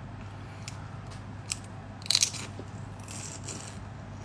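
Biting into and chewing a piece of crispy battered fried food, with a few crunches. The loudest crunch comes a little after two seconds in.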